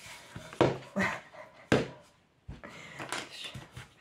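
A woman laughing in three short, sharp bursts in the first two seconds, then a brief lull followed by softer, uneven sounds of her moving about.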